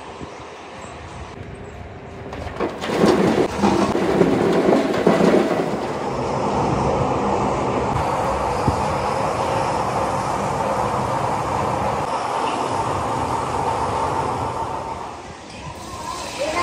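A large steel grinding drum (a ball mill) turning, with its load rolling inside it, used to grind the raw material for the ceramic. The sound comes in a few seconds in, is louder and uneven for a while, then settles into a steady run and fades near the end.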